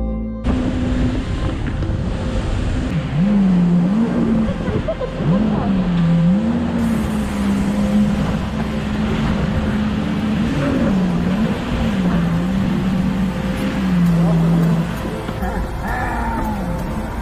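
Jet ski engine running hard over rushing spray and water, its pitch rising and falling several times as the throttle is worked. Background music cuts out about half a second in.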